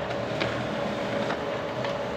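Konica Minolta Bizhub 4700p laser printer running a print job: a steady mechanical whir with a constant hum and a few faint clicks as the page feeds through.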